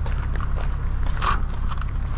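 Footsteps crunching on a wet gravel-and-dirt path at a walking pace, about two steps a second, in falling rain, over a steady low rumble.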